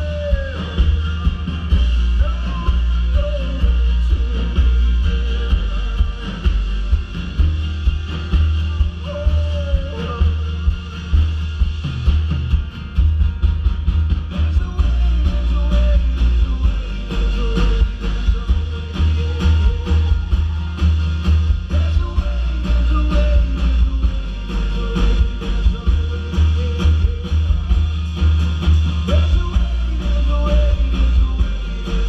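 Live band playing amplified music through a PA, with heavy booming bass, a steady beat and a voice singing, heard from within the crowd.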